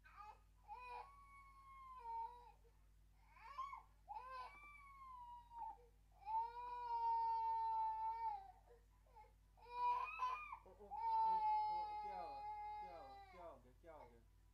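A baby crying in a series of long, drawn-out wails, several held for a second or two and dropping in pitch at the end, over a steady low electrical hum.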